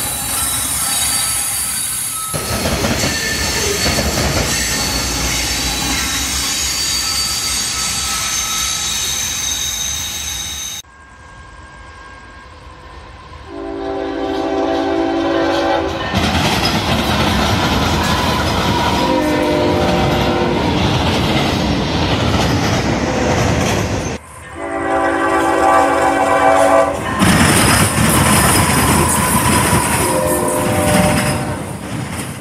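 A freight train rolling past close by, wheels clattering on the rails with a steady high squeal, for about the first ten seconds. After a sudden cut, an approaching diesel locomotive sounds its multi-chime air horn in several blasts for the crossing, a long one, a fainter one and another long one, and then the locomotive and its cars pass loudly near the end.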